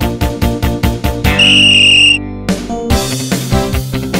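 Background music with a quick steady beat, broken about a second in by one loud, high, steady whistle blast lasting about a second, the signal that starts the race. The music stops briefly after the whistle and comes back in.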